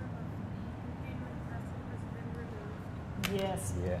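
Indistinct background voices over steady low room noise, then a closer voice speaking briefly near the end, starting with a short click.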